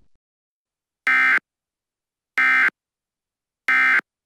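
Emergency Alert System digital data bursts: three short, identical buzzing squawks about 1.3 seconds apart. Coming right after the spoken alert, they are the end-of-message code that closes the EAS broadcast.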